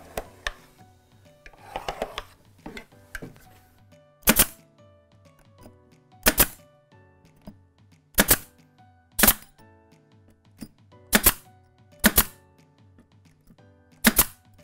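Pneumatic nail gun driving pins into tongue-and-groove timber cladding: six sharp shots, one to two seconds apart, starting about four seconds in.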